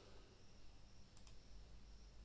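Near silence with a faint low hum, broken by two quick sharp clicks a little over a second in.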